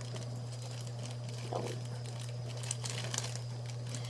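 Plastic zip-top bag filled with water crinkling and rustling faintly as it is handled, with a few light clicks near the middle, over a steady low hum.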